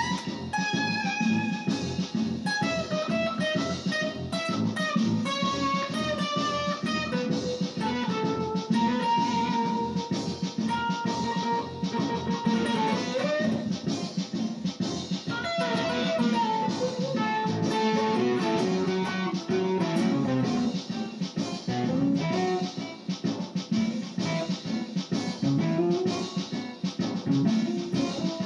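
Electric guitar playing a melodic lead line over a steady rhythmic accompaniment. A long held note about a third of the way in bends away near the middle, and then the line moves on.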